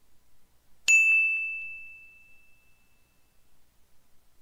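A single bell-like chime, struck once about a second in, with one clear high ring that fades out over about two seconds.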